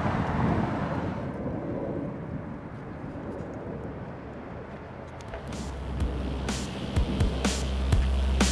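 A low rushing noise fades away over the first few seconds. Background music then fades in about five seconds in, with a deep bass line and sharp drum hits.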